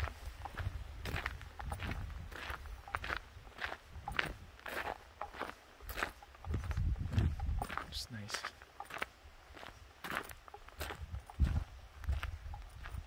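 Footsteps crunching on a gravel trail, about two steps a second, with a few bursts of low rumble.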